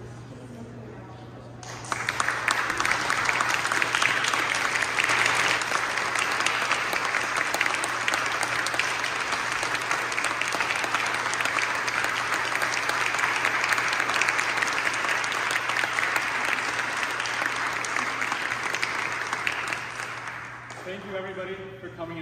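Audience applauding, starting suddenly about two seconds in, holding steady for about eighteen seconds and dying away near the end.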